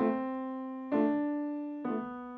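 Grand piano: three chords struck about a second apart, each left to ring and fade, with one inner note played louder than the others. This is a voicing exercise, the buried middle-line melody note brought out over softer surrounding voices.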